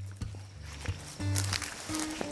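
Quiet background music of low, held bass notes that change a couple of times, with a few faint footsteps on a dirt path.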